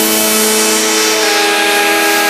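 An electronic dance music breakdown: a sustained synthesizer chord over a hiss of noise, with the bass and kick drum dropped out.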